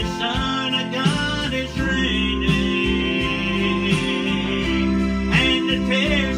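A man singing a country gospel song over an accompaniment of guitar and bass.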